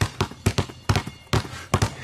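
Two basketballs dribbled hard on a concrete driveway, their bounces overlapping in an uneven rhythm of about four or five knocks a second.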